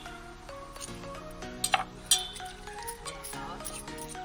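Background music with a steady melody, and two sharp clinks about half a second apart near the middle.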